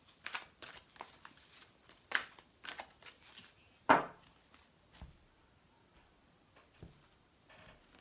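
A deck of oracle cards being shuffled by hand: a run of short, irregular card-on-card rustles and slaps, with a louder knock about four seconds in as the deck is squared against the table.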